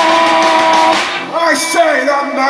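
Punk rock band playing live with electric guitars, bass and drums; the music stops about a second in. A man's voice then comes over the microphone.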